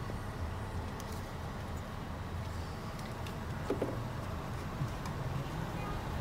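Steady low rumble of a car heard from inside its cabin, with a short faint squeak about four seconds in.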